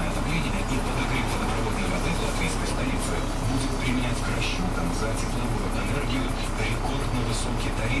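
Steady low running hum of a city bus's engine heard from inside the cabin while it creeps in traffic, under a radio playing Russian-language news speech.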